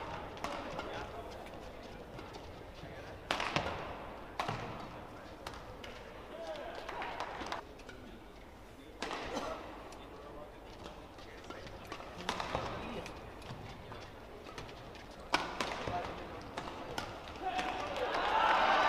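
Badminton rackets striking the shuttlecock, sharp cracks a few seconds apart, over the murmur of an arena crowd.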